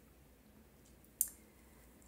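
Near silence, with one short, sharp click a little over a second in.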